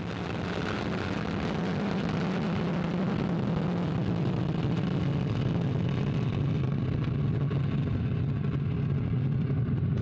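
Vega rocket's P80 solid-fuel first-stage motor burning during liftoff: a loud, low rumble that builds over the first few seconds and then holds steady.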